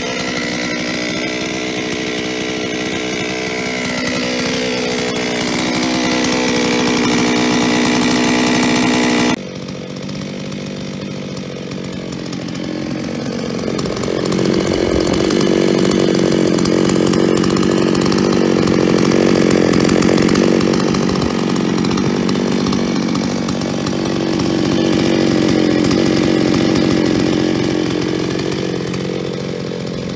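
Solo 644 two-stroke chainsaw running at idle, with the metallic clatter of piston slap from a piston worn to 0.12 mm clearance in its cylinder. After an abrupt cut about nine seconds in, the saw runs on with a fuller, lower note whose speed and loudness rise and fall.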